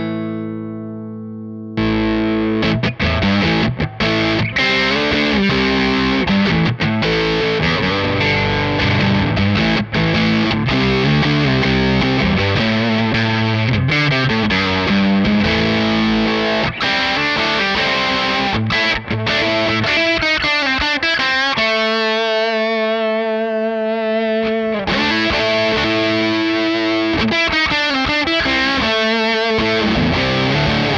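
Electric guitar played through a RAT-style distortion circuit: a ringing chord, then continuous chunky riffing with hard-clipped, mid-heavy distortion. Near three-quarters through, a held chord loses its treble, as the pedal's filter knob rolls off the high end, and the brightness comes back about three seconds later.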